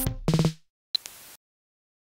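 Live-coded electronic beat from TidalCycles sample patterns: a held synth note ends, a pitched drum hit follows about half a second in, and a short high blip with a burst of hiss comes around one second. A silent gap in the pattern fills the last part.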